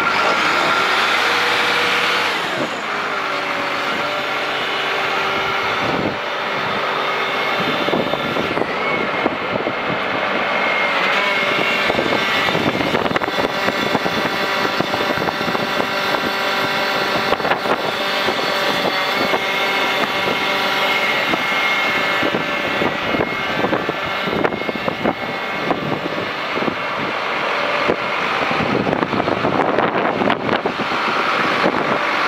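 Case IH MX200 tractor's diesel engine running steadily, heard up close, with a steady whine over it and scattered light clicks.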